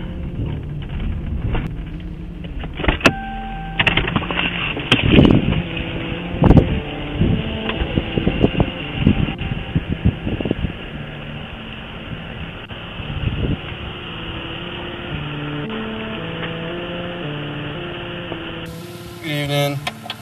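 Police dash-camera audio from inside a patrol car: steady in-car noise, a short two-pitch beep about three seconds in, a few sharp knocks around five to six seconds in, and faint voices.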